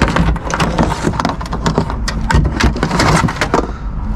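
Hands rummaging through a tangle of cables, chargers and plastic electronics, a rapid, irregular run of clicks, rattles and knocks.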